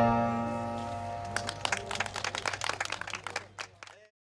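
The final chord of a song on electronic keyboard and acoustic guitar rings out and dies away, then a small audience claps from about a second and a half in, the clapping fading out near the end.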